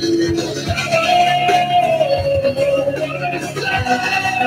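A live band playing guitars over a drum kit, with a long held lead note that slides down in pitch about two seconds in.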